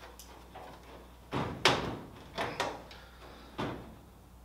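Riveted aluminium sheet fuselage side panels knocking and clattering as they are pushed and worked together, a string of sharp knocks with the loudest about a second and a half in.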